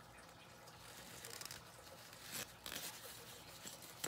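Faint rustling and scraping of a cloth reptile shipping sock as hands work to open it, with a few brief louder scratches near the middle.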